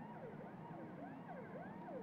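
A siren-like warbling tone whose pitch sweeps up and down about three times a second, over a steady low hum.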